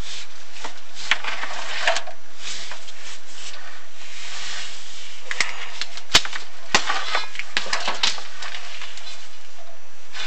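Scraping and rustling of a chimney inspection camera and its push rod rubbing along the flue walls as it is fed up through an offset. Small clicks run through it, with two sharp knocks about half a second apart two-thirds of the way through.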